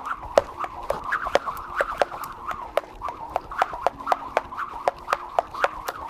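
Cable speed rope skipped fast through double-unders, side swings and a cross: sharp ticks of the rope hitting the mat, about four to five a second in an uneven rhythm, with the swoosh of the spinning rope between them.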